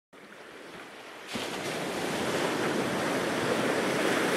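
Airliner cabin noise: a steady rushing roar of air and engines, fading in faintly, then stepping up in level about a second and a half in and growing louder.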